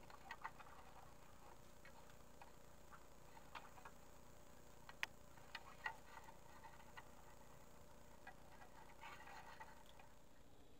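Faint, irregular clicks and light rustles of rolled-paper rods being bent and passed over one another during weaving, with the sharpest click about five seconds in and a denser run of clicks near the end.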